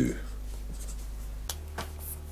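Felt-tip marker writing on paper and then drawing an underline stroke, with two light clicks about a second and a half in.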